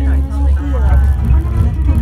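Indistinct voices talking inside a moving ropeway gondola, over a steady low rumble.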